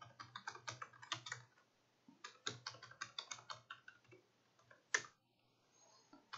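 Quiet typing on a computer keyboard: two quick runs of keystrokes with a short pause between them, then a single sharper keystroke about five seconds in.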